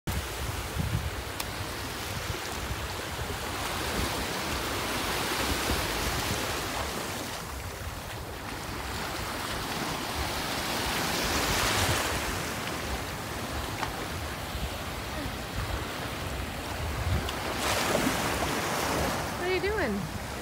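Small waves breaking and washing in over shallow water, swelling and ebbing in slow surges, with wind buffeting the microphone. A voice starts just before the end.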